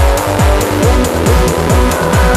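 Trance music: a steady four-on-the-floor kick drum at about two beats a second, with hi-hats ticking between the beats and sustained synth chords.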